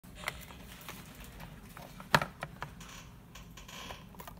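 Small sharp clicks and taps of metal tweezers and sticker paper being handled, as a logo sticker is peeled from its backing sheet, the loudest tap a little past two seconds in. A soft papery rustle follows near the end.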